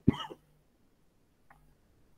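A brief vocal sound from a person, one short syllable-like utterance lasting about a third of a second at the very start, followed by near silence.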